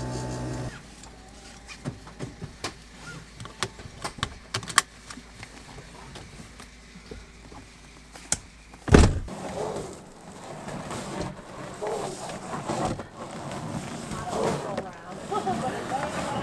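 Scattered clicks and knocks of handling inside a car, then one loud thump about nine seconds in, followed by faint talking.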